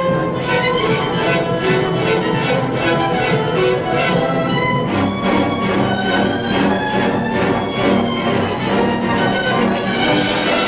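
Orchestral music with a steady beat. The lower instruments come in more strongly about five seconds in.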